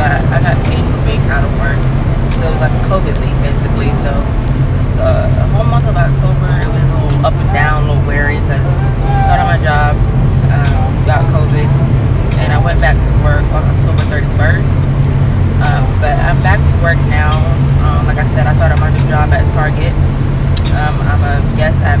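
A woman talking over a steady low hum.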